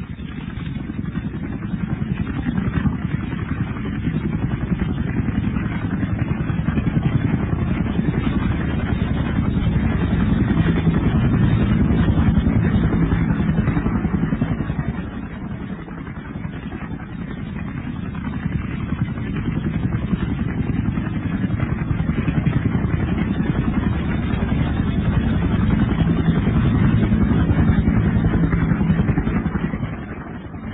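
Engine noise with a fast pulsing. It builds to a peak about twelve seconds in, eases off briefly around fifteen seconds, builds again near the end, then drops away.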